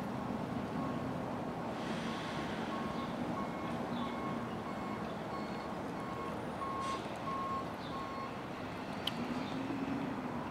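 Garbage truck's reversing alarm beeping in an even series, about one and a half beeps a second, over the truck's steady engine drone. The beeping stops about eight seconds in.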